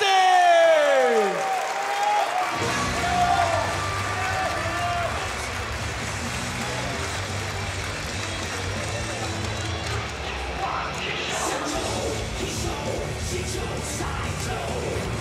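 A ring announcer's drawn-out final syllable of the winner's name, falling in pitch and fading over the first second or so. About two and a half seconds in, music with a heavy low beat starts up over crowd cheering.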